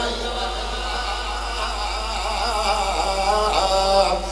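A man chanting a naat into a hand-held microphone, drawing out long, wavering held notes.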